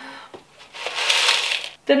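Small hard semi-hydro substrate granules poured from a plastic container into a ceramic plant pot: a gritty pour lasting about a second, starting a little under a second in.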